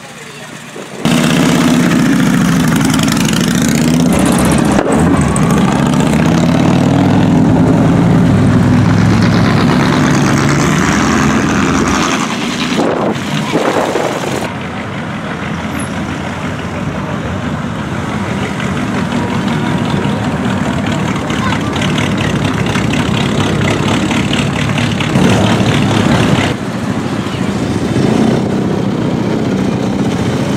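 Classic cars driving past one after another, their big engines revving loudly and changing pitch as they accelerate, starting abruptly about a second in and lasting about ten seconds, then running lower as further cars cruise by.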